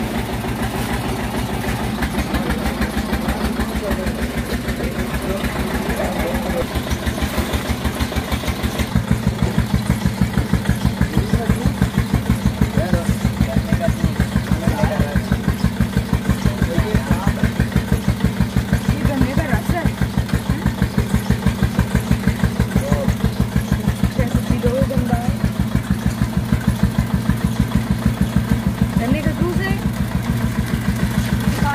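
Engine driving a belt-driven sugarcane crusher, running steadily with an even pulsing beat; it gets louder about nine seconds in. Faint voices are heard over it.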